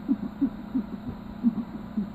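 Short, low squeaks in quick succession, each rising slightly in pitch, as marker writing is rubbed off a whiteboard by hand.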